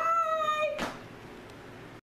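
A woman's high-pitched, drawn-out "bye", held on one note for under a second and ending in a brief breathy sound, then quiet room tone.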